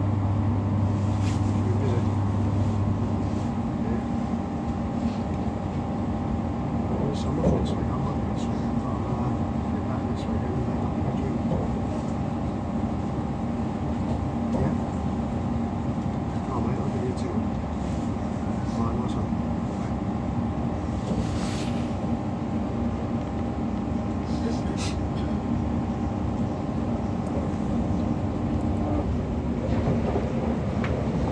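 Inside a Class 345 electric train running at speed: a steady rumble of wheels on the rails with the hum of the traction equipment and scattered clicks. One hum stops a few seconds in and another near the end.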